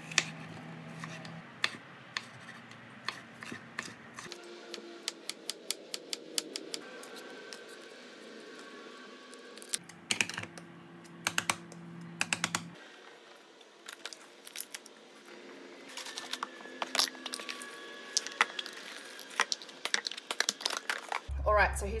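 Kitchen food prep: a knife cutting vegetables on a wooden chopping board, heard as sharp taps that come in quick runs, with the clatter of a spoon against plastic tubs and containers.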